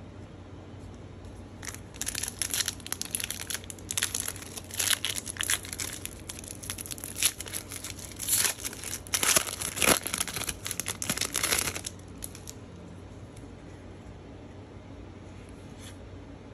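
A trading card pack's plastic wrapper being torn open and crinkled by hand: a run of crackling and tearing from about two seconds in, stopping about twelve seconds in.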